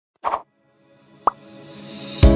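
Intro sound effects: a short pop near the start and a sharp click about a second later, then music fading in and growing louder.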